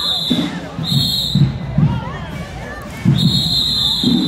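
Marching band whistle blown in loud, shrill blasts: a short one about a second in and a long one starting near the end, over a drum cadence with low bass drum hits about twice a second and crowd voices.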